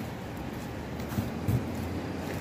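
Steady low background hum, with two soft thumps a little past the middle.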